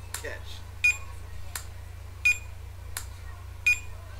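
Checkout-scanner beeps alternating with sharp snaps in a steady rhythm, about one sound every 0.7 seconds, over a steady low hum: a beat built from scanning beeps and catch sounds.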